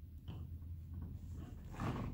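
Faint exertion sounds of a man doing sit-ups on an exercise mat: a couple of breathy exhales and body movement, with a low steady hum underneath.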